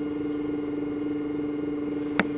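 A steady low hum holding one unchanging tone, with a fainter band just above it, from something running in the room.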